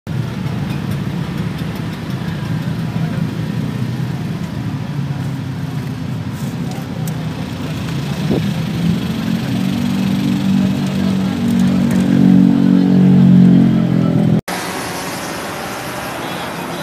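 A motor engine running with a steady low hum that grows louder over several seconds, then cuts off abruptly.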